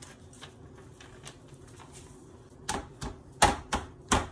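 A toddler's hands patting and slapping a folded sheet of paper flat on a tabletop to squish the paint inside: a quiet start, then a quick run of five or six sharp slaps starting a little under three seconds in.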